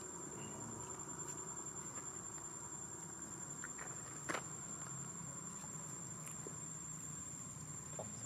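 Steady high-pitched drone of insects, with a single sharp click about four seconds in.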